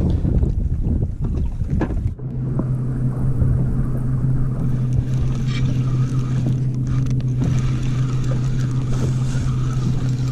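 Wind buffeting the microphone for about two seconds, then a boat's outboard motor idling with a steady low hum.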